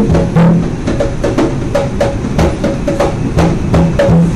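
A pair of conga drums played by hand in a fast, steady rhythm: several strokes a second, mostly sharp slaps and ringing open tones, with a few deep bass tones.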